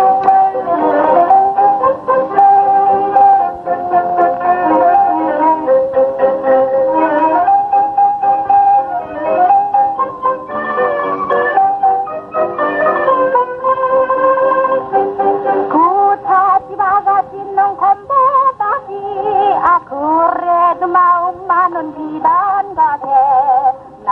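The opening of a 1938 Korean popular song played from an old Columbia 78 rpm record, with a narrow, dull sound. A melody of held notes runs over a steady rhythmic accompaniment, and wavering, sliding notes come in about two-thirds of the way through.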